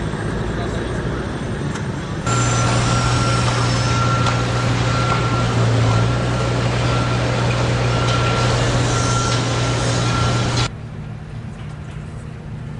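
A work vehicle's engine running at a steady hum while a high-pitched warning beeper sounds on and off; it starts abruptly about two seconds in and cuts off abruptly near the end. A quieter steady engine drone lies before and after it.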